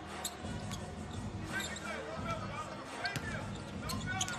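Basketball being dribbled on the court during live play, a few sharp bounces, with players' voices in the arena.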